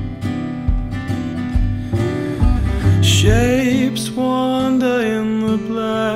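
Folk-rock band music: strummed acoustic guitar over double bass and percussion. About halfway through, a wordless sung voice with vibrato comes in over the guitar.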